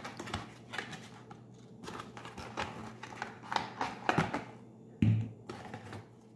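A small cardboard product box being handled and opened by hand: its flaps and insert give irregular light clicks, taps and scrapes, with one louder bump about five seconds in.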